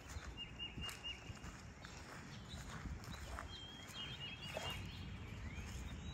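Quiet open-field ambience: a faint low rumble with light steps on grass, and faint short high chirps twice, once near the start and once around the middle.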